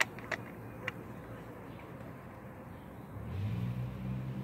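A few sharp clicks in the first second from a screwdriver working the screw of a worm-drive hose clamp on a plastic pipe. Then, about three seconds in, a low steady engine hum comes in, a vehicle running nearby.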